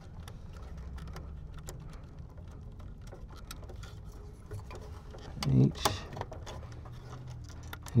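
Scattered small clicks and rustles of wire spade terminals and a plastic furnace control board being handled as wires are pulled off one at a time, over a low steady hum.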